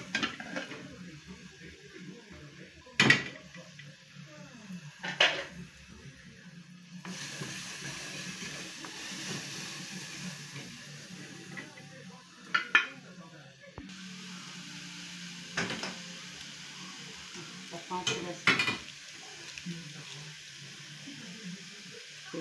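Wooden spoon stirring and scraping in a small aluminium saucepan on a gas stove, with several sharp clinks and knocks of cookware, the loudest two a few seconds in. Food sizzles lightly in the pan, more audibly in the middle stretch.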